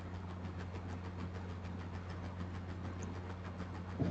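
Quiet background noise with no speech: a steady low hum with a faint, fast, even ticking over it.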